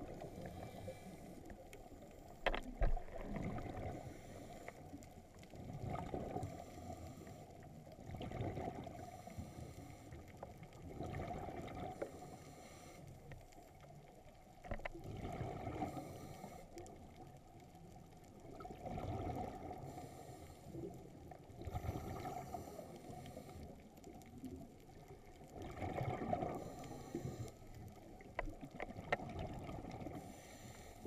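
Underwater scuba breathing through a regulator: exhaled air bubbling out in surges every three to four seconds, over a steady low underwater background.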